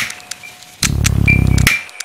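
Experimental electronic sound-design track in a repeating loop: sharp clicks and short high beeps over a faint steady tone, with a low buzz that comes in about halfway through and cuts off near the end.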